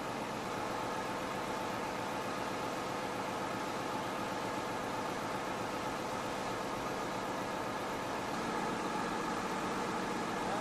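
A crane's engine running steadily at idle, a constant hum with a noisy edge and no change in pace.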